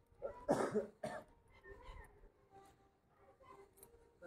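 A cough: two harsh bursts about half a second apart, shortly after the start, then only faint small sounds.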